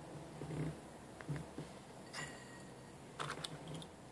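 Quiet close-mic handling of wooden matches on a tabletop: a few soft low thumps and two or three short, sharp scratchy clicks, the first about two seconds in and more just after three seconds.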